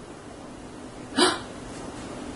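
A woman makes a single short, breathy vocal sound about a second in; otherwise only quiet room tone.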